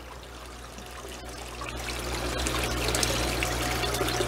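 Small paludarium waterfall trickling and splashing into the tank water, growing louder over the first couple of seconds.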